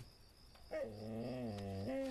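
A dog making one long whine, starting under a second in and settling onto a steady, level pitch near the end.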